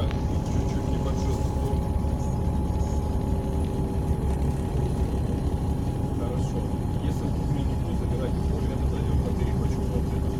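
Car cabin noise while riding in slow traffic: a steady low road and engine rumble with a faint steady hum over it.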